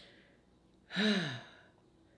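A woman's voiced sigh about a second in, one short breath whose pitch falls away.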